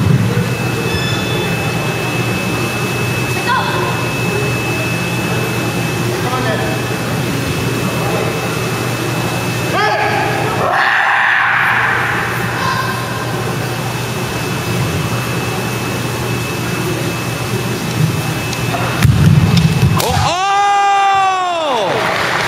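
Kendo kiai shouts from competitors squaring off with shinai: a short shout about halfway through and a long loud shout near the end, its pitch rising then falling, over steady gym hall noise.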